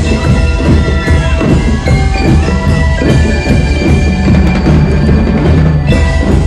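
Drum and lyre band playing: bell lyres ring out a melody over continuous drumming.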